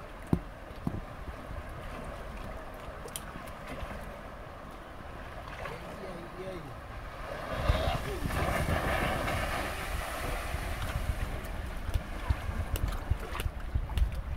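Fast river current rushing steadily, with wind buffeting the microphone. About seven and a half seconds in, a louder rush of splashing spray swells for a few seconds as the wave board skims across the current, then eases back.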